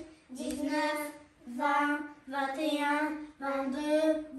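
Children chanting numbers aloud in a singsong voice, four phrases in a row with short breaks between them.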